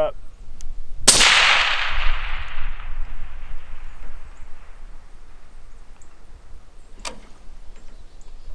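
A single shot from a scoped long-range sniper rifle about a second in, its report rolling away in a long echo that fades over about three seconds. A short, sharp click follows near the end.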